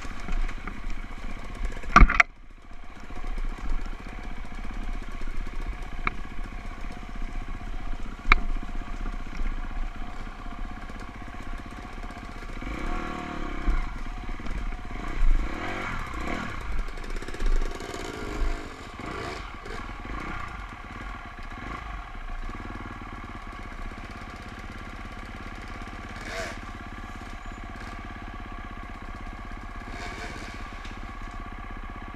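Dirt bike engine running at low speed over a rocky trail, rising and falling with the throttle. There is a sharp knock about two seconds in, and the engine settles to a quieter, steady run near the end.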